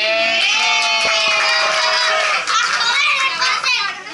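Family cheering after the birthday candle is blown out: a long, held, high-pitched shout from several voices lasting about two seconds, followed by excited shorter calls and chatter that includes a child's voice.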